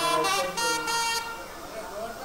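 Nadaswaram playing loud held notes of temple music, dying away after about a second and a half.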